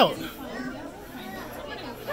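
Indistinct background chatter of several people talking, after a spoken word ends at the very start.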